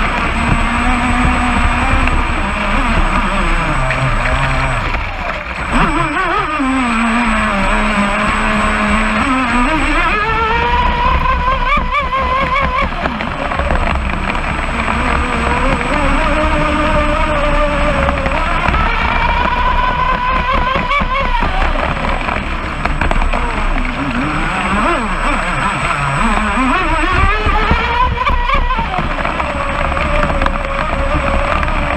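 Brushless electric motor of a Pro Boat Blackjack 29 RC racing boat whining, its pitch falling and rising again several times as the throttle is eased and opened, over a steady rush of water and wind on the hull.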